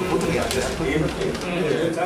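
Men talking in a small office, low voices running on without a break.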